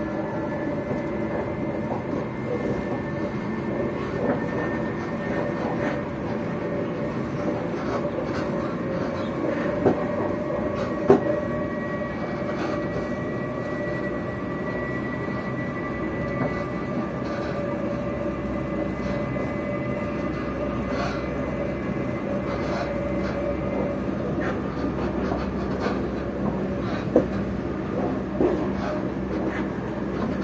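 Passenger train running at speed, heard from inside the carriage: a steady rumble and hum with a faint whine, broken by a few sharp clicks.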